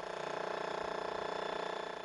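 Electric demolition hammers breaking up a stone minaret, a steady rapid rattle that fades near the end.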